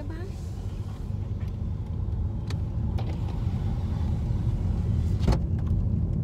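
Low rumble of a car on the move, growing steadily louder, with a few light clicks and a sharper one about five seconds in.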